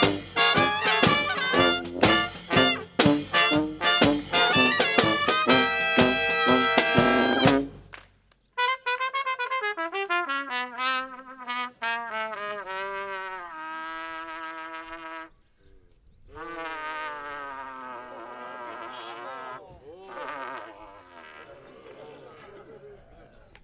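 Brass street band (trumpets, trombone, sousaphone, saxophones, snare and bass drum with cymbal) playing a lively tune with steady drum strikes, stopping short about eight seconds in. A lone trumpet then plays two unaccompanied phrases, the first stepping down note by note.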